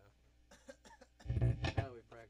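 Faint talking, then a person coughs once, short and loud, close to the microphone about a second and a half in.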